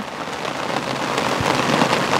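Steady rain falling on a fishing umbrella overhead and on the wet, muddy ground around it: a dense, even patter of drops.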